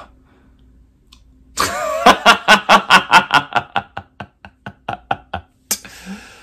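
A man laughing: a long run of rhythmic 'ha's, starting about a second and a half in, that slows and fades away, ending in a quick sharp intake of breath.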